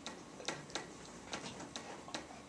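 Pen tip tapping and clicking on an interactive whiteboard while writing: about half a dozen quiet, sharp clicks at uneven intervals.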